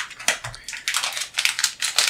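Plastic antistatic bag crinkling and crackling as a hand grabs it and lifts it, with a sharp click at the start and then a quick run of crackles.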